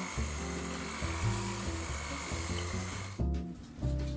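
Electric hand mixer running steadily, its twin beaters whisking grated zucchini batter in a stainless steel bowl, with a high motor whine. The mixer cuts off suddenly about three seconds in. Background music plays throughout.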